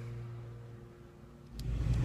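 Faint room tone with a steady low hum, then, about a second and a half in, an abrupt switch to the low rumble of a car's engine heard from inside the cabin.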